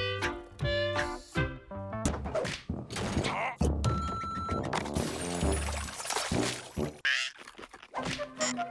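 Cartoon background music with comic sound effects: knocks and thuds, and a short steady electronic beep about four seconds in.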